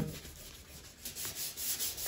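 Dry hand sanding of 2K primer filler on a car body panel: sandpaper rubbed back and forth over the panel in short strokes. The strokes are faint at first and louder in the second half.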